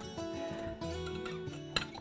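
Background music on acoustic guitar, held notes changing a few times, with a short click near the end.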